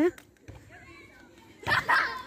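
Faint voices of children at play, after the last syllable of a man's shout. A brief louder noise comes about one and a half seconds in.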